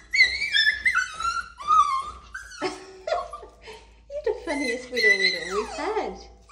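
A puppy whimpering and yipping with excitement while a woman talks to it in a high voice.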